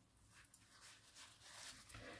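Near silence: room tone with a few faint, soft sounds, slightly stronger in the second half.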